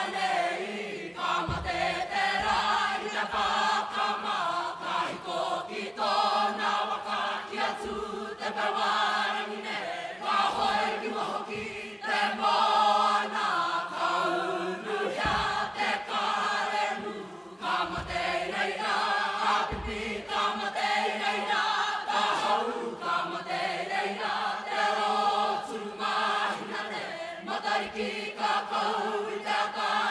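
Kapa haka group of young men and women singing a Māori chant together in phrases, with a few short low thuds under the voices.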